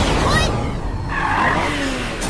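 Cartoon car sound effect: tyres skidding to a stop, the noisiest part starting about a second in.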